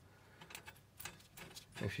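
A few faint, irregular clicks as the knurled knob of a remote brake balance bar adjuster is turned by hand, shifting the balance bar and so the front-to-rear brake bias. A man's voice starts speaking near the end.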